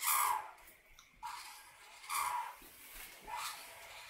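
Black felt-tip marker drawing on a paper template: four short strokes about a second apart.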